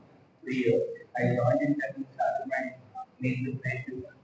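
A young man's voice speaking into a microphone in short phrases with pauses, the words not made out.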